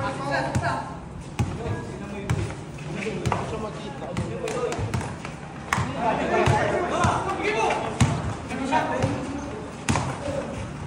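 A basketball bouncing on a concrete court during a game, in irregular dribbles and bounces, with players' voices calling out around it.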